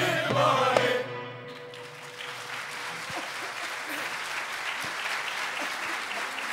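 A mixed choir with a Turkish classical ensemble of ud, kanun and violins ends the song on a held final chord that stops about a second in, with one note lingering briefly. Audience applause then rises and carries on steadily.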